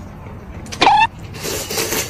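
Noodles being slurped noisily from a bowl of soup, two long sucking slurps. A short, sharply rising squeak-like sound comes just under a second in.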